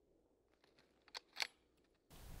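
Near quiet, broken by a few faint small clicks and then two sharper metallic clicks about a quarter second apart, a little past the middle.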